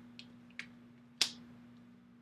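One sharp, short click a little past halfway, with two faint ticks before it, over quiet room tone.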